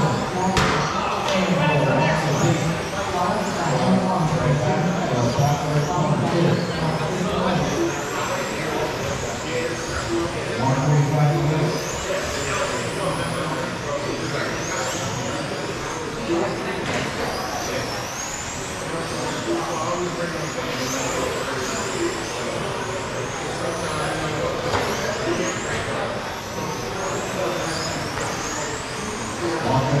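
High-pitched whine of several 1/10-scale electric RC touring cars with 21.5-turn brushless motors. The whine glides up and down over and over as the cars accelerate and brake around the track. Voices run underneath.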